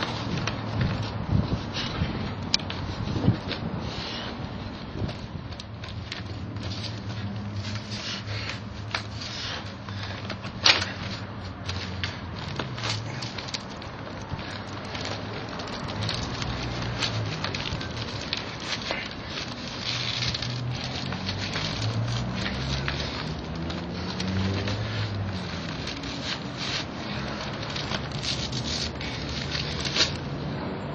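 A thick stack of paper crackling and tearing as it is bent back and forth in the hands: a dense run of small crackles with a few sharper snaps, one loud snap about a third of the way in.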